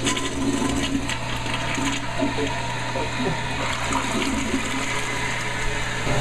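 Toilet flushing: a steady rush of water through the bowl.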